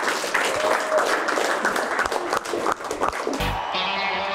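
A small group applauding with scattered, uneven claps, ending with a short low thump about three and a half seconds in; music starts right after.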